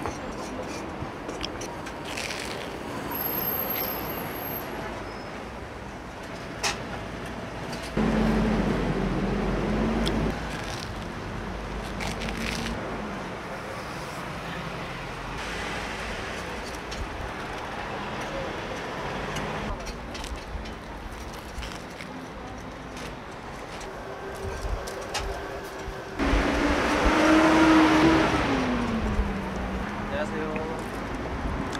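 Street traffic passing by. Vehicles go past over a steady background hum, with two louder passes, about eight seconds in and near the end, where an engine's pitch rises and falls as it goes by.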